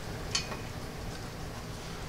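Low steady background noise with a single faint, short click about a third of a second in, as of a light metal part knocking while the coupler is worked onto the pump shaft.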